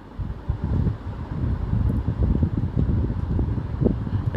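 Uneven low rumble of wind buffeting the microphone, starting suddenly and gusting on and off.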